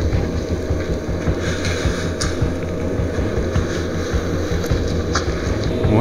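A steady low rumbling drone from the soundtrack of an eerie video playing on a laptop, with a couple of faint ticks over it.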